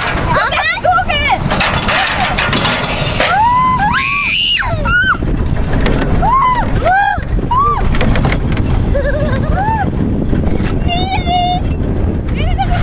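Children on a swing ride squealing and calling out in high, arching whoops several times, over a steady rumble of wind on the microphone as the ride swings.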